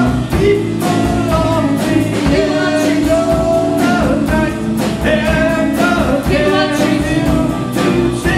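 A live rock band playing a song: a lead vocal holds long sung notes over electric guitars, bass, keyboard and a steady drumbeat.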